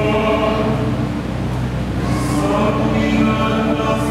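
Mixed choir of women's and men's voices singing in harmony, holding long chords in several parts, with a sibilant consonant about two seconds in.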